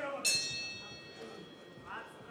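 A bell struck once, about a quarter second in, ringing with several clear high tones that fade away over about a second and a half: the bell that starts the round.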